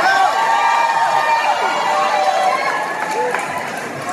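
Concert crowd cheering and screaming, many voices overlapping, easing slightly near the end.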